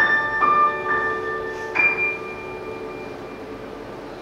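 Grand piano playing a few slow, high notes in a classical piece; the last, near the middle, is held and left to ring and fade into a pause.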